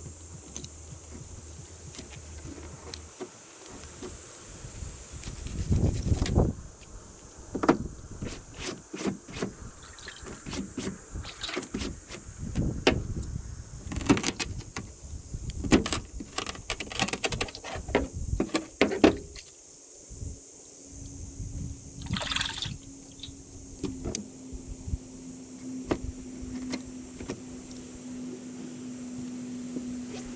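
Hand-held fish scaler scraping the scales off a bluegill on a plastic cutting board: a long run of quick, irregular rasping strokes through the first two-thirds, then only a few light scrapes. A low steady hum comes in about two-thirds through.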